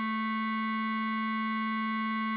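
Bass clarinet holding the piece's final tied note, one steady low tone at an even level.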